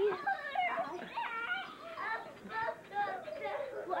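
A small child's high voice singing without clear words, in held, wavering notes.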